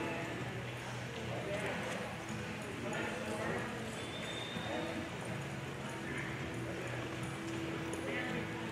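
Hoofbeats of a cutting horse and cattle moving through soft arena dirt, with people's voices murmuring in the background.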